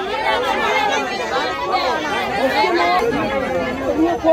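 Several people talking loudly over one another, women's voices prominent, in a heated argument amid crowd chatter.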